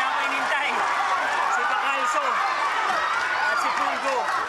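A large crowd of boxing spectators shouting and yelling over one another, a steady loud din of many voices with no single speaker standing out.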